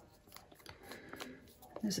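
Faint scattered clicks and light scrapes of a small plastic cup and wooden stir stick being picked up and handled.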